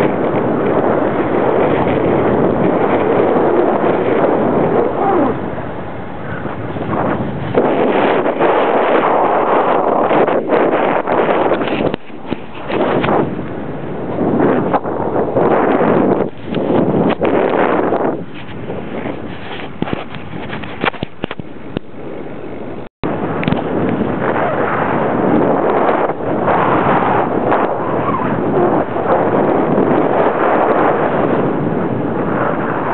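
Heavy wind buffeting on the microphone of a camera carried along at speed, loud and gusting in surges. The sound cuts out for a split second a little after the middle.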